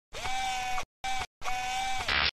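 Electronic logo-sting sound effect: three steady synthetic tones on one pitch, the first sliding up into it, the second short.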